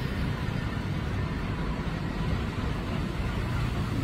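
Steady city traffic noise: vehicle engines running and a low road rumble, with no distinct event standing out.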